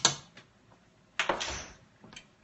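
Kitchen utensils knocking and clattering at the stove. Two sharp knocks come at the start, then a single clatter with a short rattling tail about a second in, as the sage is added to the pot.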